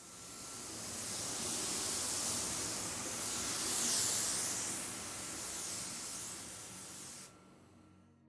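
Anest Iwata WS-400 Series 2 gravity-feed spray gun spraying a single atomization test pass onto paper: a steady hiss of atomizing air that swells and eases as the gun sweeps across the panel, then stops abruptly about seven seconds in when the trigger is released.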